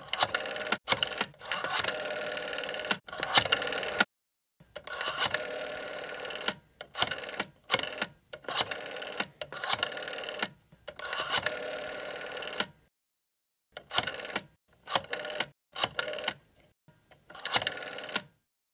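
A telephone bell ringing in repeated bursts, mostly a second or two long, with short breaks between them.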